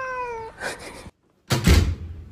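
A domestic cat's meow, one drawn-out call that falls in pitch and ends about half a second in. After a brief dead silence there is a short, loud thump near the end.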